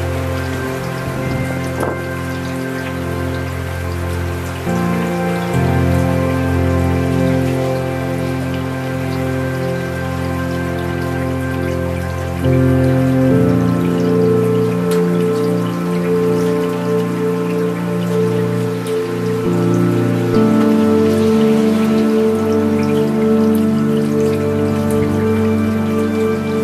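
Steady rain falling, mixed with slow ambient music of sustained chords that shift every eight seconds or so.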